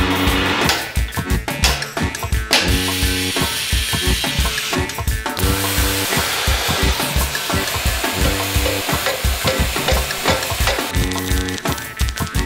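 Gas burner flame hissing as a steady rush that starts about two and a half seconds in and fades near the end, over background music with a steady beat.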